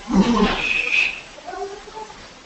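A person's voice: a short, loud vocal sound of about a second, followed by fainter voice sounds.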